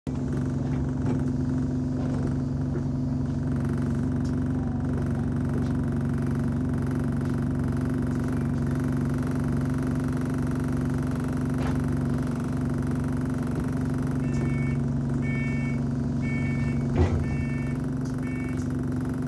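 Steady low drone of an Alexander Dennis Enviro200 Dart single-decker bus's diesel engine, heard from inside the passenger saloon. Near the end, a run of about five short high electronic beeps and a single knock.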